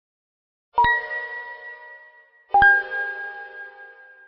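Audio logo sting: two bell-like chime strikes, the first about a second in and the second about a second and a half later, a little lower in pitch. Each strike rings on and fades slowly.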